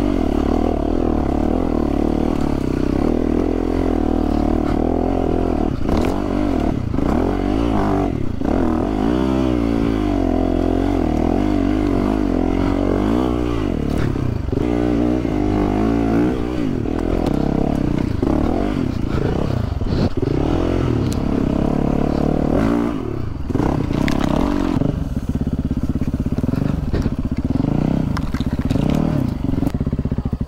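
Yamaha WR four-stroke single-cylinder enduro motorcycle engine running under way, its revs rising and falling continually, with a few brief knocks.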